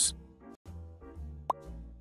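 Quiet background music, with a short rising 'bloop' transition sound effect about one and a half seconds in.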